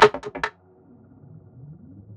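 Electronic drum and bass intro: a sharp hit with a quick stuttered run of repeats in the first half second, then a quiet gap holding a low, slowly rising synth tone.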